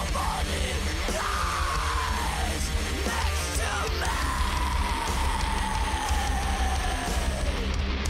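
Metalcore song with heavy distorted guitar and bass under harsh yelled vocals; in the second half a long held note slides slowly down in pitch.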